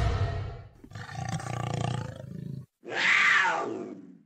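Big cat roar sound effect: three roars in a row, the last one falling in pitch.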